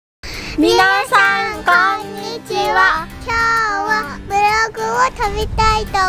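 A child's singing voice in short sung phrases over a music backing.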